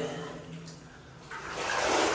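Water sloshing and splashing as someone wades through shallow, muddy water on a flooded mine floor, starting a little past halfway and getting louder.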